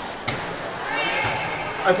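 A volleyball struck once, a sharp smack about a quarter second in, echoing in a gymnasium over steady background noise.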